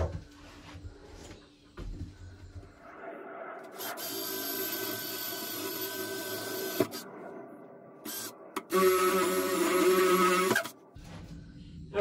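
Cordless drill boring holes through a plywood wall, the starter holes for cutting an opening. It makes two steady-speed runs: a longer, quieter one starting about three seconds in, and a shorter, louder one about nine seconds in.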